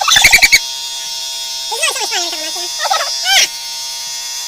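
Electric beard trimmer buzzing steadily under high-pitched, sped-up voices that chirp and warble like birds: a quick run of loud chirps at the start, then bending calls around the middle and again just before the end.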